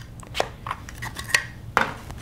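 A handful of short clicks and knocks as a plastic roll-on wax cartridge heater is handled and moved toward its base on a stainless steel trolley.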